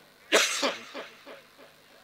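A man coughing once into a stage microphone, a sharp cough about a third of a second in, followed by a couple of fainter throat sounds.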